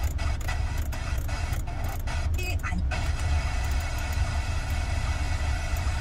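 2012 Audi A4's factory FM radio being tuned across stations. The broadcast sound is cut by short gaps every fraction of a second for about the first three seconds as the frequency steps, then runs on steadily, over a constant low hum.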